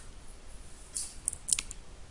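Stylus strokes on a pen tablet: a few short, high scratchy clicks about a second in, as handwriting is drawn.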